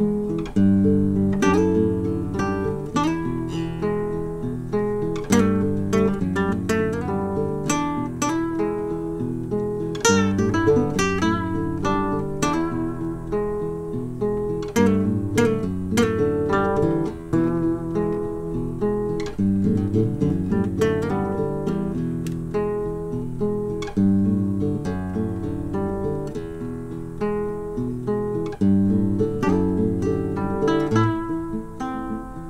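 Acoustic guitar music, a steady run of plucked notes and chords.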